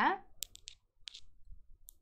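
The end of a spoken word, then a few faint, short clicks: four in quick succession about half a second in, one more just after a second, and a last one near the end.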